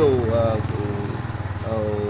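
Iseki compact tractor's diesel engine idling steadily, a low even pulse under a man's voice.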